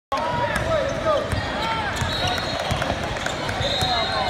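Basketball being dribbled on a hardwood court, with repeated bounces and sneakers squeaking on the floor, over crowd chatter in a large hall.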